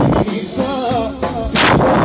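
Loud live folk band music with a wavering, ornamented melody line, cut through by sharp heavy percussive hits, one about one and a half seconds in.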